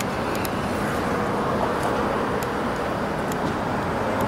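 Steady city street traffic noise: a constant wash of passing cars.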